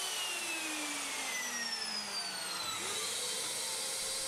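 Workshop vacuum extractor running with a steady hiss, while a motor's whine falls slowly in pitch over about three seconds.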